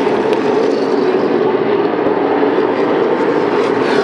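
A pack of Super Late Model stock cars' V8 engines running at speed around an oval track, a loud, steady drone.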